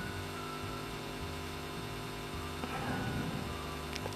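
Steady electrical hum with a faint hiss: the background noise of the voice-over recording, heard in a pause between spoken phrases.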